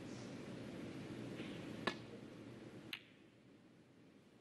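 A snooker cue tip strikes the cue ball with a sharp click about two seconds in. About a second later a second, softer ball-on-ball click follows as the cue ball hits a red, over faint hall ambience.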